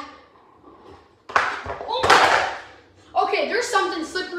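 A sudden loud rushing noise starts about a second in and lasts over a second, then a child starts talking near the end.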